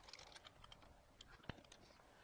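Near silence with a few faint light clicks and one sharper click about one and a half seconds in, from the lathe's knurling tool holder and compound being handled.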